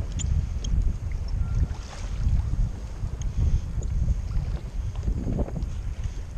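Heavy wind buffeting the microphone, a gusty low rumble that rises and falls, with a few faint small ticks above it.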